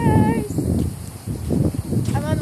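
Wind buffeting a phone's microphone outdoors, an uneven low rumble, with a brief high, wavering call at the very start.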